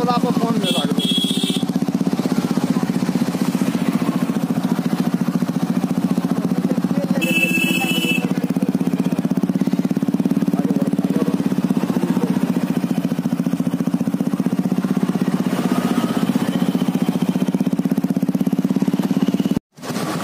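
Small motorcycle engines running at a steady road speed close by, with a steady drone. Two short horn beeps come about a second in and again around seven seconds in.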